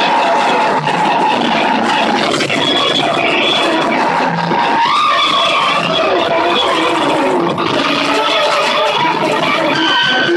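Live noise improvisation: a dense, loud wall of distorted noise with a few held tones that shift in pitch, one gliding upward about halfway through.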